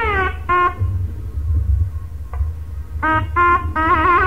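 Nadaswaram playing Carnatic music in an old live recording. A held note glides down at the start and a short note follows. Then comes a pause of about two seconds with only a low rumble under it, and short notes start again near the end, the last one wavering.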